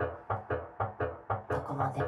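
Background music: a steady pattern of short, quickly fading notes, about four a second.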